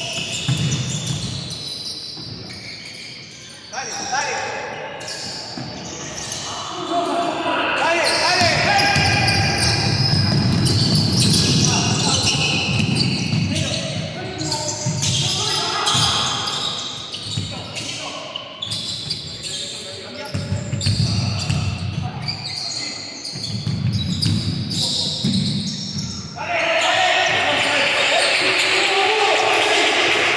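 Basketball bouncing on a hardwood gym floor during play, with players' voices, echoing in a large hall. The sound turns suddenly louder about three and a half seconds before the end.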